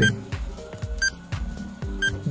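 Quiz countdown timer sound effect: a short, ringing tick once a second, over soft background music.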